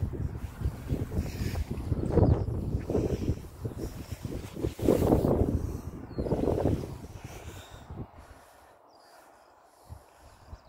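Wind buffeting the phone's microphone in gusts, a low rumble that comes and goes and dies down about eight seconds in.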